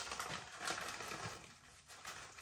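Faint rustling and crinkling of a plastic snack bag of Bombay mix as it is handled and lifted, fading out near the end.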